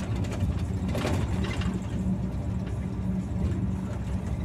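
Heavy truck's engine and road noise heard from inside the cab while cruising at highway speed: a steady low drone.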